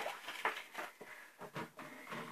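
A few faint, short clicks and knocks of things being handled, spaced out over two otherwise quiet seconds.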